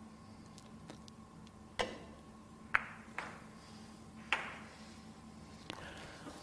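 A Russian pyramid billiard shot: the cue strikes the cue ball about two seconds in, then the heavy balls hit each other in a quick run of sharp clicks, the loudest just under three seconds in and two more over the next second and a half.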